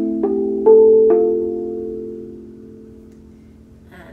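Mass-produced overtone steel tongue drum, its slit tongues tuned with a second tone an octave apart, struck with a mallet: three notes in about the first second, the middle one loudest, then all ringing on together and fading slowly.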